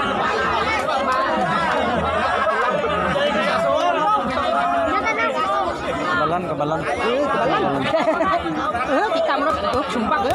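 Crowd of spectators chattering, many voices overlapping at once with no single voice standing out.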